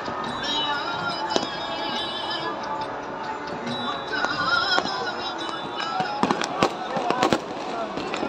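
Voices and a song with music, joined in the last couple of seconds by a quick run of sharp firecracker bangs, about four or five in under two seconds.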